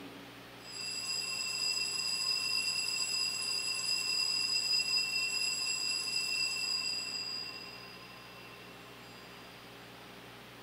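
Altar bells ringing steadily through the elevation of the consecrated host, a high ringing that starts about a second in and fades out near the end. The ringing marks the consecration.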